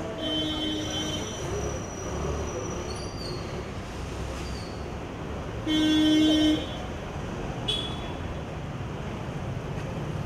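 Car horns honking twice over steady street traffic noise: a honk of about a second at the start and a louder one of about a second around six seconds in.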